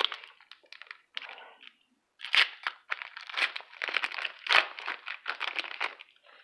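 A foil trading-card pack wrapper being torn open and crinkled by hand: a few small rustles and clicks, a short pause about two seconds in, then a longer run of loud crinkling and tearing.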